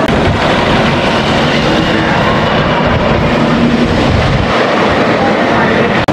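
Roller coaster train running along its track with a continuous rumble, mixed with people's voices.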